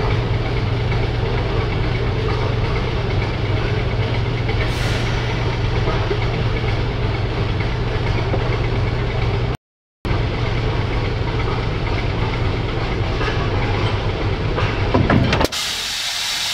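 Diesel engine of a rail vehicle running steadily at low speed as one railcar is eased toward another for coupling. The sound cuts out completely for about half a second just before the ten-second mark, then carries on, swelling briefly near the end.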